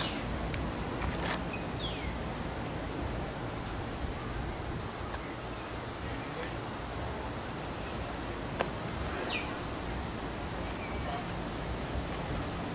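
Outdoor ambience among trees: a steady hiss with insects, and a few short falling bird chirps. A single sharp click comes a little past the middle.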